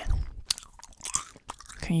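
Gum chewing close to the microphone: a few wet clicks and smacks during a pause, then a woman's voice starting near the end.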